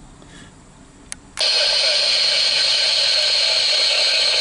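Car horn sounding, held steadily from about a second and a half in.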